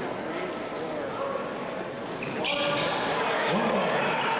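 Crowd noise in a school gymnasium during a basketball game: a steady chatter of spectators that rises into louder crowd shouting about halfway through, with sneakers squeaking on the hardwood as play resumes.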